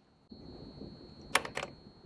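Low rustling noise, then two sharp clicks in quick succession a little over a second in.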